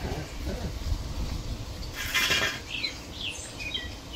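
Faint outdoor ambience over a low rumble: a brief hissing noise about two seconds in, then a few short bird chirps.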